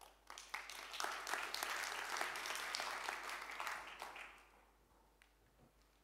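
Audience applause that builds quickly, holds for about three seconds, and dies away about four and a half seconds in.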